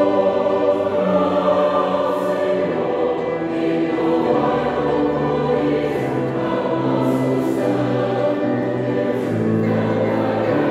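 A mixed choir of men's and women's voices singing a sacred song in sustained, full chords that shift every second or so.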